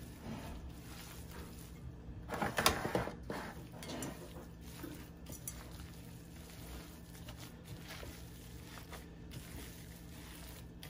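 Quiet squishing and handling sounds of raw ground beef being mixed by a gloved hand in a bowl, with a louder burst of handling noise about two and a half seconds in.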